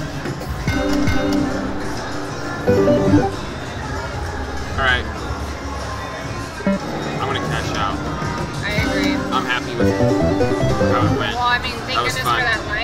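Aristocrat Cash Express Mega Line slot machine (50 Lions game) playing its electronic game music and reel-spin jingles as the reels are spun again and again, with short chirping chimes a few seconds apart as small wins land.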